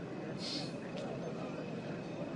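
Low, steady murmur of a gathered crowd's voices, with a brief high hiss about half a second in.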